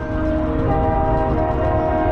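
Marching band brass holding loud, sustained chords, with a new chord coming in about two-thirds of a second in.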